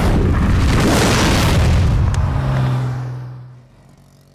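Cartoon jetpack blast-off sound effect: a loud rushing burst with a deep rumble, then a low hum as it fades away over the last second.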